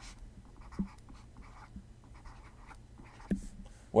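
Faint scratching of a stylus writing on a tablet in short strokes, with a light tap about a second in and a stronger one near the end.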